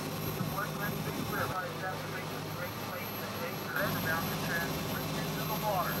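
Steady low drone of a tour boat's engine, with brief fragments of indistinct voices over it.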